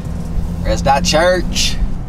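Car cabin noise from a moving car: a steady low rumble of engine and road. About halfway through, a person's voice is heard briefly over it.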